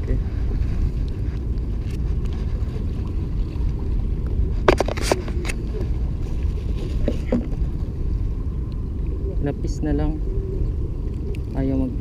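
Steady low rumble of wind buffeting the microphone, with a short run of sharp clicks about five seconds in.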